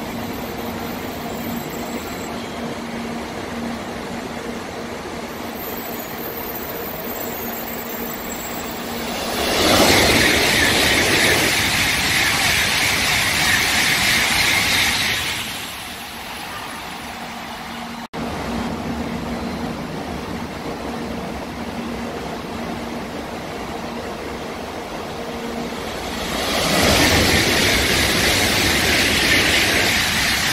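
Shinkansen high-speed trains passing through a station without stopping. About ten seconds in, a loud rushing sound comes in suddenly, holds for about six seconds and falls away. A second train's rush builds near the end.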